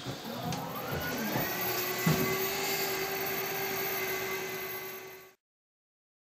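A glass-bottom tour boat's motor spinning up: a whine rises over the first second or two, then settles into a steady whir under a wash of noise as the boat gets under way. A single thump about two seconds in, and the sound cuts off suddenly near the end.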